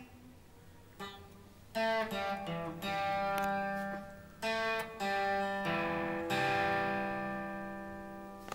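Electric guitar strummed through a chord progression: a run of chords starting about two seconds in, the last one left ringing and slowly fading.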